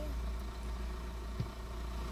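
Car engine idling with a steady low hum, heard from inside the stationary car's cabin, with a faint tick about one and a half seconds in.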